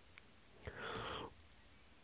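A quiet, breathy whisper from a man, about half a second long, starting just before a second in. Faint keyboard clicks come before it.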